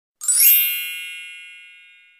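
A single bright, bell-like ding from an intro chime sound effect, made of several high ringing tones that sound together and then fade slowly over about a second and a half.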